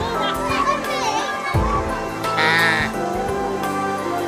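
A goat kid bleats once, a short quavering cry about two seconds in, over background music and children's voices.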